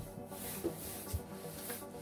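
Cardboard box rubbing and sliding on a table as it is handled, with a few soft knocks, over faint background music.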